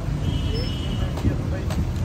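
Busy outdoor market background: a steady low rumble of traffic with faint distant voices.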